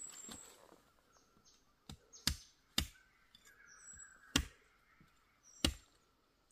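Irregular sharp taps and knocks of a hiker walking on a stone-paved trail, from footsteps and the bamboo walking stick striking the stones, about five in all. Faint bird chirps sound between them.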